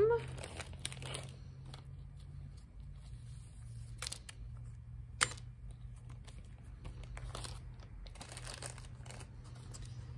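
Plastic packaging bag of a Walbro carburetor rebuild kit being opened and handled, crinkling, with a few sharp clicks about four and five seconds in, over a steady low hum.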